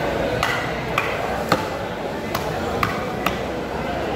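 A knife chopping tuna meat on a wooden tree-trunk chopping block: six sharp chops, roughly half a second apart.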